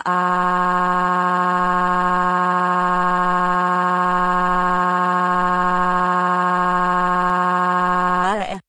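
A text-to-speech voice crying one long, flat, unbroken wail held on a single note for about eight and a half seconds. Its pitch wobbles briefly just before it cuts off.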